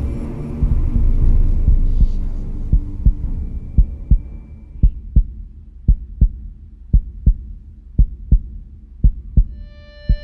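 Heartbeat sound effect: a double thump repeating about once a second, as a music bed fades out in the first few seconds.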